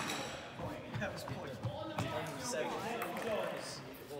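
Indistinct voices echoing in a large sports hall, with a few short sharp knocks of a ball bouncing.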